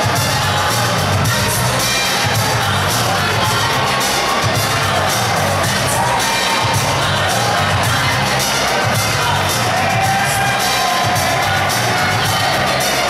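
Loud music with a steady bass beat playing over an arena's public-address system, with a crowd cheering and shouting under it.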